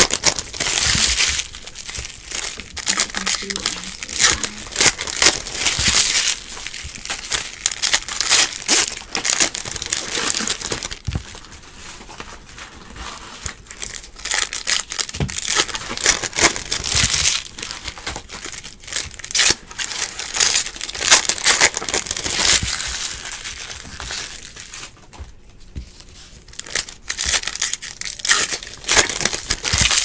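Wrappers of Topps Stadium Club baseball card packs crinkling as they are torn open and handled, in repeated bursts with a couple of quieter stretches.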